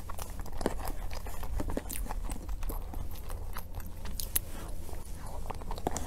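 Close-miked eating sounds: soft cream cake taken off a metal spoon and chewed, heard as irregular small mouth clicks and chewing.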